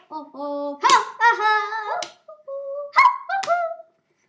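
Young girls singing a made-up song without accompaniment, in held notes that bend in pitch, with a few hand claps.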